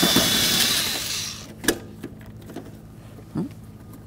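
Cordless drill-driver with a 7 mm socket spinning out a door sill plate mounting screw for about the first second, then winding down and stopping. A single sharp click follows a little under two seconds in.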